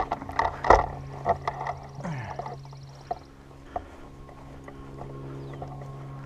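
Knocks and rustling from the camera being handled and turned in the first second or so, then a steady low hum with faint outdoor sounds.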